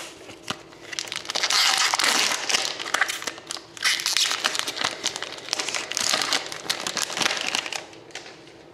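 A trading-card pack wrapper being torn open and crinkled by hand: a dense, continuous crackle from about a second in until near the end.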